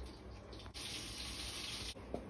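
Running water, a steady rush that starts suddenly about three-quarters of a second in and cuts off suddenly near the end.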